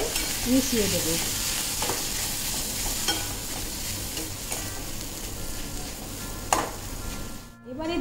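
Boiled eggs, sliced onion and greens being stirred in a hot kadai: a steady frying sizzle, with a few sharp knocks of the spatula against the pan.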